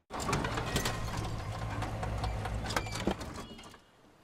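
A badly dented minivan driving up and coming to a stop: a low engine hum under a dense rattling clatter from its battered body, dying away about three seconds in as the van halts.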